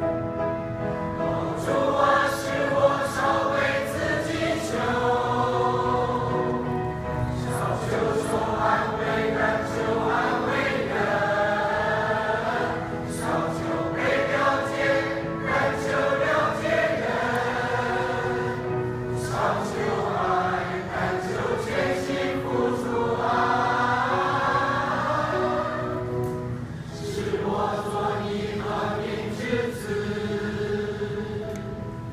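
Mixed choir of men and women singing a hymn together in parts, in long sustained phrases with short breaks between them.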